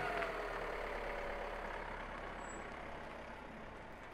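Renault Master minibus engine running with a steady low rumble, its sound slowly fading.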